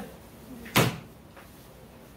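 A single sharp thump about three quarters of a second in, dying away quickly.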